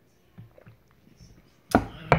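A ceramic mug set down on a hard surface: one loud, sharp knock about three quarters of the way in, after a couple of faint soft sounds.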